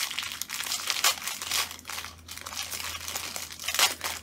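Packaging crinkling and rustling in the hands in irregular crackles as a paper blending stump is taken out of its pack.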